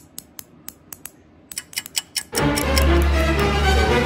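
Two Stoneworks stone guitar picks tapped together, making a quick, irregular run of sharp clicks. About two seconds in, loud background music with a heavy bass comes in and drowns them out.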